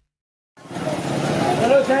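About half a second of silence, then the noise of a crowded market lane fades in: voices and chatter over a steady street hum. Near the end a man calls out "side" to clear the way.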